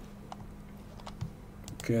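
A few faint, scattered clicks of a computer mouse over a low steady hum.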